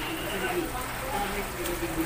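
Pork afritada sauce simmering in a frying pan, with a steady soft crackle and bubbling.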